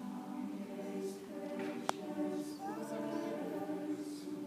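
Mixed choir singing held chords, the singing starting right at the beginning. A single sharp click cuts through about two seconds in.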